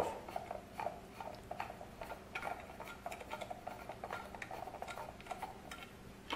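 Faint, irregular small clicks and ticks of plastic binocular parts being handled and unscrewed.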